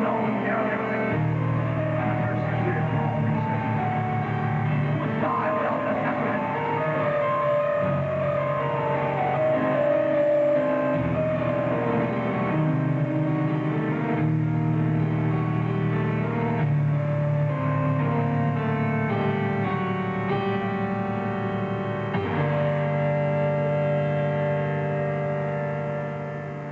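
Live metal band playing, with electric guitar and bass holding slow, sustained chords that change every second or two.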